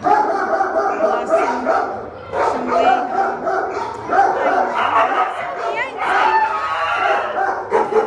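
A dog vocalising almost without pause in long, wavering, talk-like whines and howls, broken by two short breaks.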